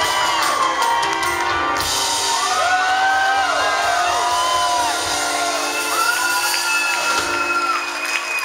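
Live rock band ending a song: drums and cymbals stop about two seconds in and the last chords ring on, while the crowd cheers and whoops.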